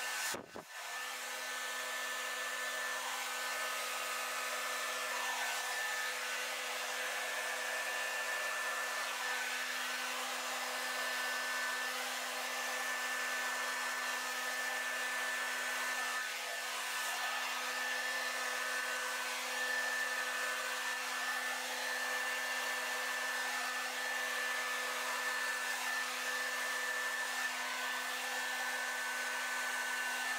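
Handheld hair dryer switched on about half a second in and running steadily on its cool setting, a rush of air with a steady hum under it.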